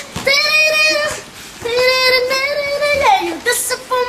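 A boy singing, holding two long steady notes, the second ending in a falling slide about three seconds in.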